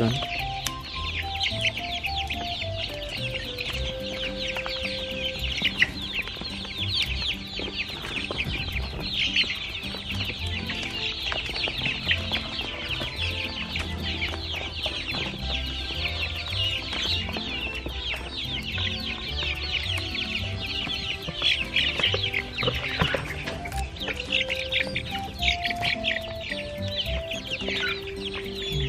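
A flock of laying hens clucking and squawking all at once in a dense, unbroken chatter while they crowd in to peck at black soldier fly maggots scattered on the floor.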